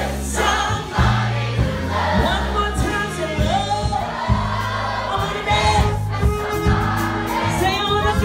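Live band playing with a steady beat and bass line, with a group of voices singing along.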